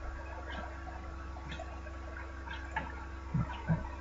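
Steady electrical hum and hiss of a desktop recording setup, with scattered faint ticks and two short, louder soft knocks close together near the end.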